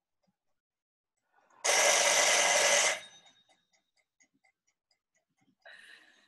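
A person blowing a strong breath of air straight at the microphone for about a second and a half, then a shorter, softer breath near the end. Faint, even ticking, like a clock, sounds in between.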